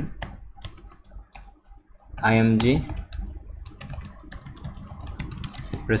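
Typing on a computer keyboard: a run of quick, irregular key clicks, with a brief spoken word about two seconds in.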